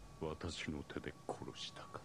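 Faint, whispered speech in short phrases.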